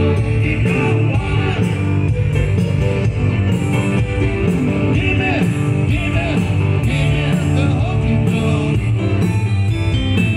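Live rock band playing: drum kit, electric guitar and keyboards in a steady up-tempo beat, with singing over it.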